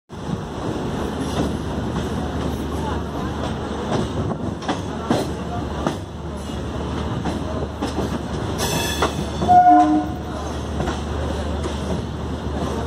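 Train rolling slowly over station pointwork, heard from aboard through an open doorway, with repeated clicks and clatter of wheels over rail joints and crossings. A short train horn blast sounds about two-thirds of the way through.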